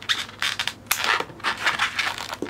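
Scissors cutting the excess tail off a knotted latex twisting balloon: a quick series of short, irregular snips and scrapes, the sharpest about a second in.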